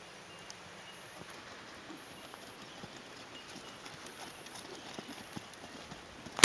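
Faint hoofbeats of a Thoroughbred horse cantering on a sand arena, soft muffled footfalls with scattered light clicks.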